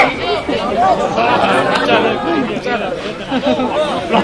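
Many voices calling out at once, overlapping so that no single word stands clear, with a few faint clicks among them.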